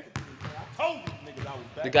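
Basketball being dribbled on a hardwood gym floor: a few sharp bounces.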